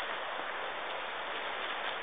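A mountain stream running noisily down a wooded bank, heard as a steady hiss of rushing water.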